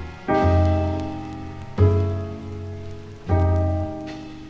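Jazz piano trio recording played from a vinyl record: slow, sustained piano chords, each with a deep bass note beneath, struck about every second and a half and left to ring down. A fine crackle of record-surface noise runs underneath.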